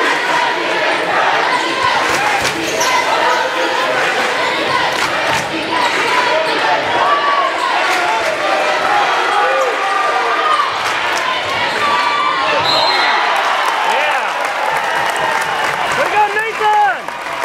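Basketball bouncing on a hardwood gym floor as it is dribbled during play, with crowd voices running underneath.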